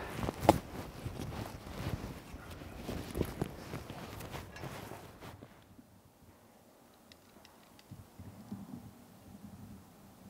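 Irregular footsteps of rubber boots crunching through dry pine needles and grass, with rustling of the canvas planting bags. After about five seconds it drops to a faint outdoor hush.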